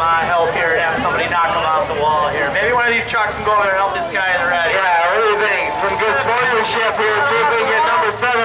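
People talking throughout, with derby truck engines running underneath.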